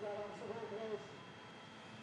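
A faint, indistinct voice in the background for about the first second, then only low steady background noise.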